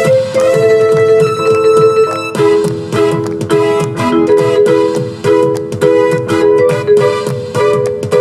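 Electronic vibraphone, an Alternate Mode MalletKAT Pro mallet controller, played with four mallets: struck melodic notes and held chords over a steady rhythmic accompaniment with a beat.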